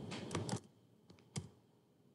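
Computer keyboard keystrokes: a quick run of several clicks in the first half second, then two more single keystrokes about a second in, entering a type name into a field.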